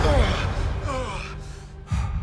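A man gasping with a voiced, wavering breath over orchestral trailer music that fades down, then a short sharp hit near the end.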